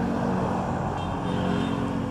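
A steady, even motor hum with a low drone, running on without change.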